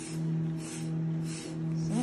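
Metal shedding blade scraping down a shedding pony's coat in a few short, hissy strokes about half a second apart, over a steady low hum.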